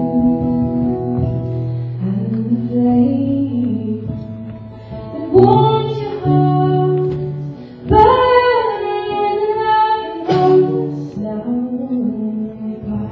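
Live folk song: a woman singing over acoustic guitar accompaniment, with long held sung notes that swell about five seconds in and again about eight seconds in.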